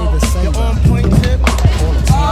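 Bowling ball rolling down the lane with a steady low rumble, under background music with singing.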